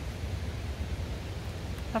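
Steady wind noise on the microphone outdoors, a low rumble with a faint hiss and no distinct events; a man's voice begins at the very end.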